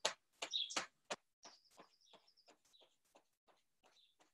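Hands tapping on the lower back through clothing, a string of soft taps about three a second that fade out toward the end, heard through a video call's audio.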